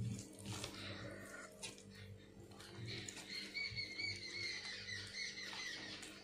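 A bird calling: a quick run of short, evenly repeated chirps in the second half, over a steady low hum.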